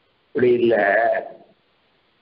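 A man's voice making one drawn-out, wavering utterance about a second long, starting a moment in.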